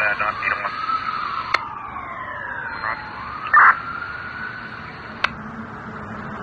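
A siren-like wailing tone gliding slowly up and down, with a few sharp clicks and a short loud burst about three and a half seconds in.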